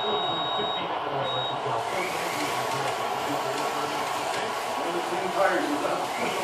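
1/32-scale slot cars running on a multi-lane track, their small electric motors giving a steady whir that swells about two seconds in. Voices in the background.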